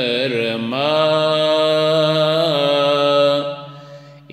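Male voice singing a Turkish ilahi in makam Hüzzam without instruments: a short ornamented phrase, then a long held melismatic line that ends about three seconds in, followed by a pause for breath. A steady low drone sounds beneath the voice.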